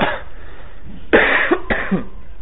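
A person coughing: a short cough at the start, then two coughs in quick succession about a second in.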